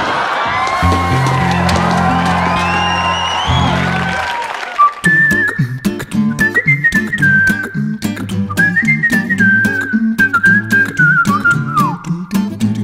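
Closing theme music. A held low chord with rising glides gives way, about five seconds in, to a whistled melody over rhythmically strummed guitar.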